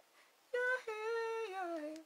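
A woman's voice holding one long note, starting about half a second in and sliding down in pitch near the end.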